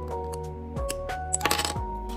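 Background music with a melody over a steady bass and beat. About a second and a half in comes a brief cluster of sharp clicks: plastic Lego bricks clicking together as the pieces are pressed into place.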